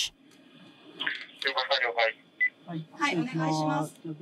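Crew voices over a radio communications link, with one short beep a little past halfway.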